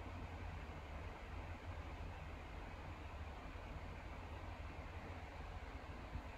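Quiet, steady room tone: a low hum with a faint hiss, and no distinct sound.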